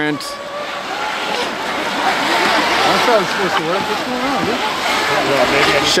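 River rapids rushing, with the whine of small electric RC jet boats' motors rising and falling as they are throttled.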